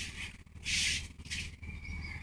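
A person's quiet breaths close to the microphone: a few short, soft hisses, the clearest one a little over half a second in.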